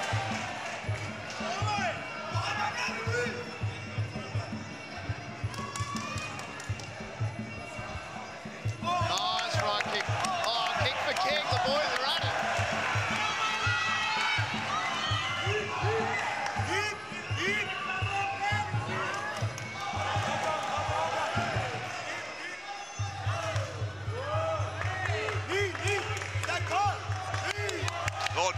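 Muay Thai fight music: a wavering, sliding pipe melody over a steady, evenly pulsing drum beat, mixed with shouts from the crowd.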